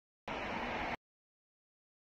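A short burst of noise, under a second long, that cuts in and out abruptly out of dead silence.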